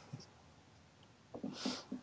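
Mostly quiet, then about one and a half seconds in a man gives a short breathy laugh.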